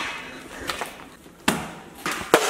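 A plastic water bottle landing on a hard floor after a flip: one sharp knock about one and a half seconds in, with a fainter tap before it.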